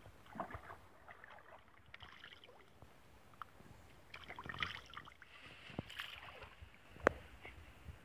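Faint splashing and sloshing of shallow stream water as a person wades and scoops water up to wash his face, with a sharp click near the end.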